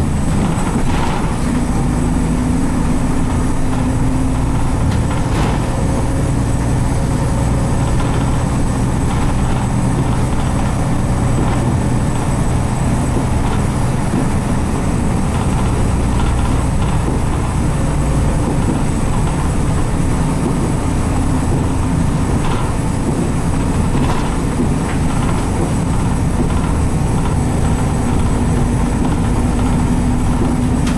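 Cabin running sound of a Nissan Diesel RM route bus (U-RM210GSN) under way: its 6.9-litre FE6 diesel engine drones steadily, its pitch shifting now and then with the throttle and gears, with a few faint knocks and rattles from the body.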